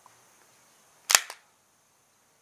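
A sharp metallic click about a second in, with a lighter click just after it: the slide of a Beretta 92FS pistol being drawn back and locking open on the empty magazine.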